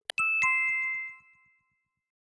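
Quiz sound effect: a clock-like ticking ends with a click or two, then a two-note chime, the second note lower, rings out and fades within about a second.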